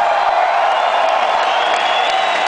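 Large arena crowd cheering and whooping, a dense, steady wash of many voices.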